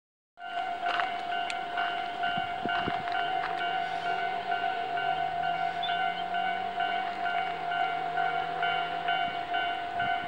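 Railway level-crossing warning bell ringing steadily, an electronic tone pulsing about twice a second. A faint low engine hum sits beneath it from about three seconds in until near the end.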